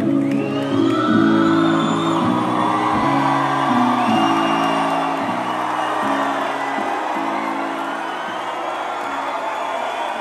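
Live concert music over a PA, with low sustained chords changing about every half second, fading away over the second half. A crowd cheers and whoops throughout.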